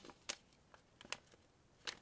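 Three light, sharp clicks and taps, about one every second, of small breakfast things being set down and rearranged on a tray.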